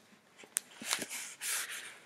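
A single sharp click, then two short breathy bursts of unvoiced laughter, like chuckles through the nose, close to the microphone.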